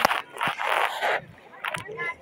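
Lake water splashing and sloshing in bursts around rubber inner tubes close to the microphone, with a sharp click at the start and another near the end.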